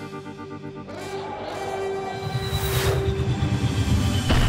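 Ominous cartoon score music with sustained chords. About halfway in, a low rumble swells beneath it, with a whoosh near the end, as a sound effect for the turtle-shaped vehicle landing in snow.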